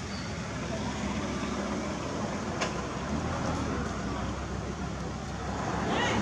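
Steady low rumble with a hiss over it, like outdoor traffic-type background noise, with one brief click about two and a half seconds in.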